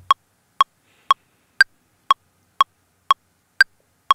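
Ableton Live's built-in metronome clicking in 4/4: eight short clicks half a second apart, a steady 120 BPM. Every fourth click is higher in pitch and marks the first beat of the bar.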